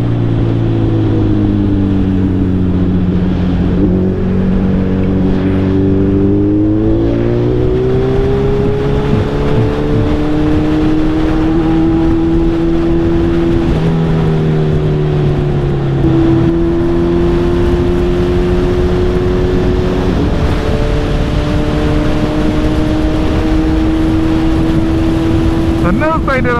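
Suzuki Hayabusa's inline-four engine on the move, with wind noise. Its note falls for the first few seconds as the bike slows, climbs steadily as it accelerates, then settles into a steady cruise with a few small dips and rises in pitch.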